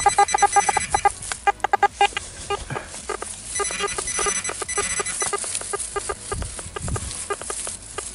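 Metal detector giving a fast, uneven stutter of short beeps as it is swept close over loose soil. It is picking up a buried coin whose exact spot has not yet been found.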